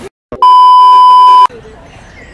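An edited-in censor bleep: a single loud, steady, high-pitched beep about a second long. It starts and stops abruptly, just after a brief drop to dead silence.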